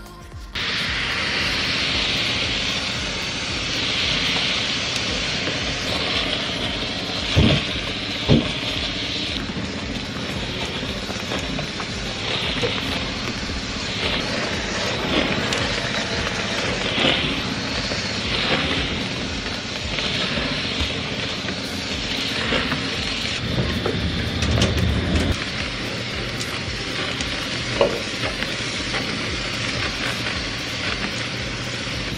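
Shark Professional steam mop running: a steady hiss of steam as the mop is pushed back and forth across a tile floor, with two sharp knocks about seven seconds in and a low rumble near the end.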